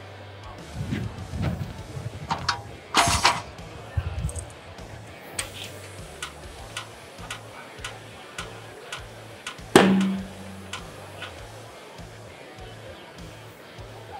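A tire being inflated on a tire changer, heard over background music with a steady beat: a short blast of air hissing about three seconds in, then a single loud pop just before ten seconds in, typical of the tire bead seating on the rim.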